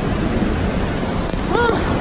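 Loud, steady rushing of Vernal Fall's falling water and drenching spray, with wind buffeting the phone microphone.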